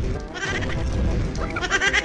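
Short intro jingle with a high, wavering voice-like sound effect over the music, ending abruptly.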